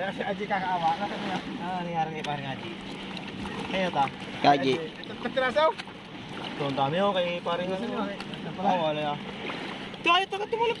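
Several people talking casually in the background throughout, over a steady low hum.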